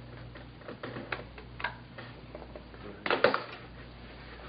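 Small clicks and taps from handling a plastic external hard drive enclosure and pushing a USB cable into it, then a louder knock about three seconds in as the enclosure is set down on the table. A steady low hum runs underneath.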